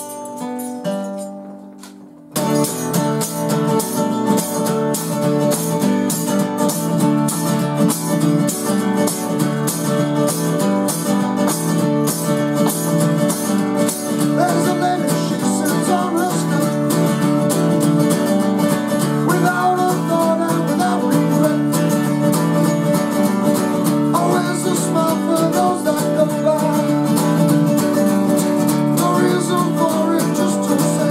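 A steel-string acoustic guitar chord rings out and fades, then steady rhythmic strumming starts about two seconds in. A man's voice sings over the guitar from about halfway through.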